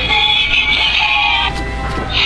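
Musical greeting card playing a song with singing through its small built-in speaker, thin and tinny. The music dips briefly about one and a half seconds in.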